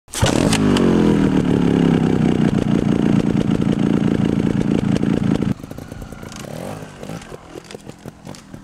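Motorcycle engine revving hard and held at high revs for about five seconds, its pitch dipping at first, then cutting off suddenly to a much quieter running with a few short revs.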